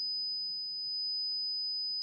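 High-pitched sine-wave test tone: a single pure, steady pitch that does not change.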